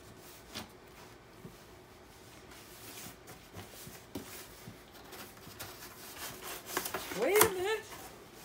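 Cardboard box being handled and its flaps pulled open: soft rubbing and scraping with a few light knocks. Near the end comes a short voice-like sound that rises and bends in pitch.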